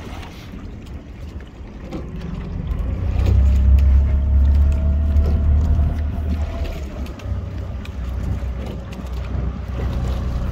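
A motorboat's outboard engine runs with a low drone. It swells louder about three seconds in and eases off again after about six seconds.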